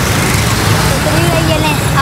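Steady roadside traffic noise, a loud low rumble, with voices talking faintly in the background.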